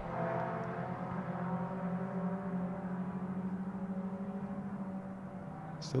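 Engines of a group of club race cars running on track, a steady drone of nearly constant pitch that slowly fades.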